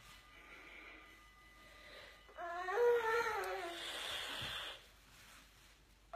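A woman's wordless moan of relief about two seconds in, a wavering, slightly falling voiced sound of about two seconds that trails into a breathy exhale, as a pointed stick works inside her ear.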